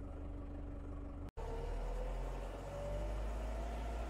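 Lovol 504 tractor's diesel engine running: a steady low rumble at first, then, after a brief break, running under way with a whine that rises slowly in pitch as the tractor picks up speed.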